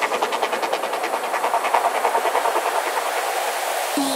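Breakdown of a psychedelic trance track: with no kick drum or bass, a hissing synthesized noise texture pulses rapidly and evenly with the beat.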